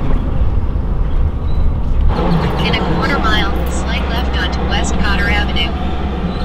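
Steady low rumble of a car's engine and tyres heard from inside the cabin as it rolls slowly onto a car ferry. Voices talk over it from about two seconds in.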